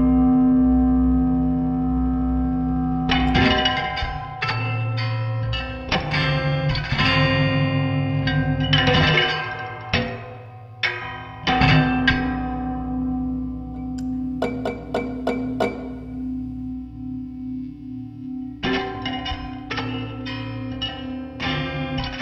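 Electric guitar laid flat and played with a slide bar through echo and effects: a held low drone under clusters of plucked, ringing notes. The plucking thins to sparse ticks past the middle and picks up again near the end.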